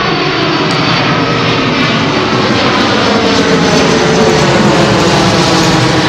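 Airplane passing low overhead: a loud, steady engine drone that slowly falls in pitch as it goes by.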